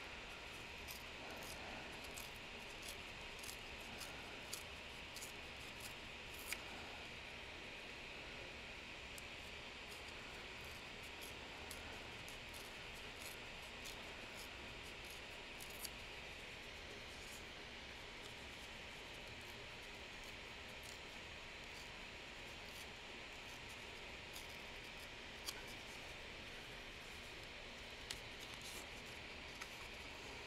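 Small pieces of old book paper handled and torn by fingers: faint, scattered soft crackles and ticks over a steady low hiss.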